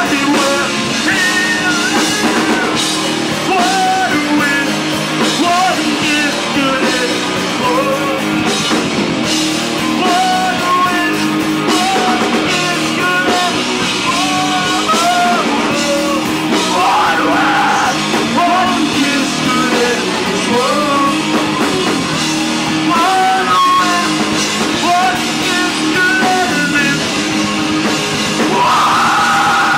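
Live rock band playing loudly: electric guitars, bass guitar and a drum kit together, with short melodic lines over a steady driving accompaniment.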